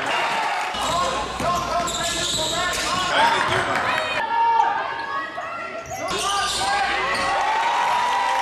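Basketball game sounds in a gym: a ball bouncing on the court amid voices, with the sound shifting abruptly about four and six seconds in.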